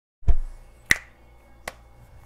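A low thump, then two sharp taps on a water-filled beer glass, each leaving a short high ring at the same pitch. The second tap is softer.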